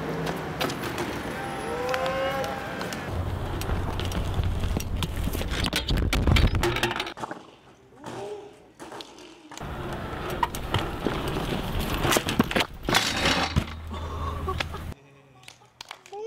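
BMX bike clattering and knocking on pavement as it is ridden, dropped and landed, over outdoor background noise, with a brief rising and falling squeal about two seconds in.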